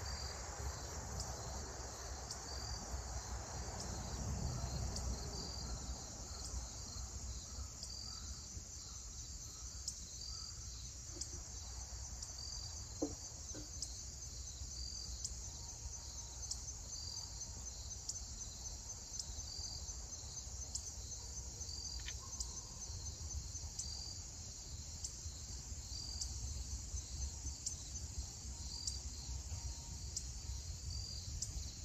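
Insects trilling in a steady high chorus, with a shorter call repeating about every second and a half, over a low steady rumble.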